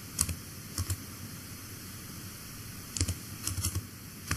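Computer keyboard keys being typed as a phone number is entered: a few separate keystrokes in the first second, then a quick run of several near the end.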